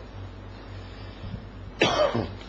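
A man coughs once, a short sharp burst near the end, after a quiet pause filled only by a low steady hum.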